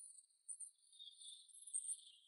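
Near silence: a faint, steady high-pitched hiss of room tone.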